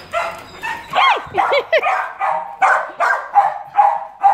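Dogs barking and yipping. About a second in come a few high yips that rise and fall in pitch, then a quick run of barks at roughly three a second.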